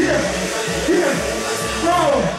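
Live coupé-décalé dance track played loud over a hall PA, with a steady bass beat and a man's voice singing into the microphone over it.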